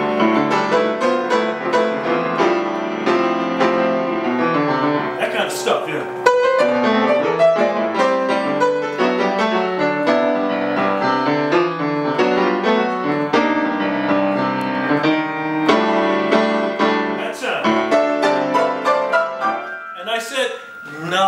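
Acoustic grand piano played without a break: fast runs and dense, loud chords voiced in fourths and fifths, in the quartal style of modern jazz piano.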